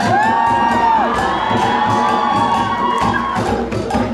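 A crowd cheering and shouting, with several long, high, arching calls held over the first three seconds while the djembe hand drums play more sparsely. The drums strike steadily again near the end.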